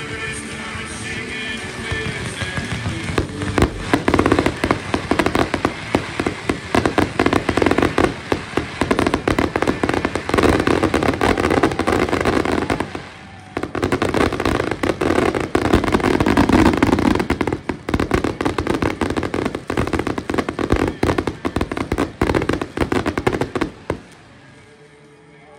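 Fireworks going off in a rapid, near-continuous barrage of bangs and crackles. It starts about three seconds in, has a brief lull near the middle and cuts off abruptly at the end. Music plays under the opening seconds.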